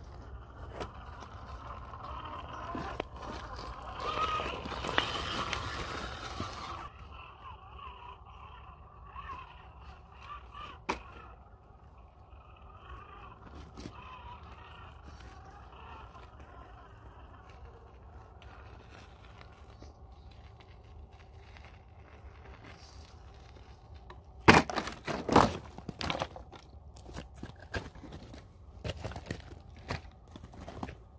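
Small electric RC rock crawler climbing loose rock: its motor and drivetrain whine rises and falls with the throttle, with scattered crunching and scraping of tyres and stones. Near the end, a short run of loud, sharp knocks and clatter.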